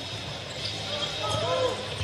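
On-court sound of live basketball play: a basketball bouncing on the hardwood floor, with faint voices in the arena.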